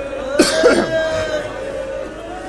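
A man coughing, two quick coughs about half a second in, over a faint steady hum.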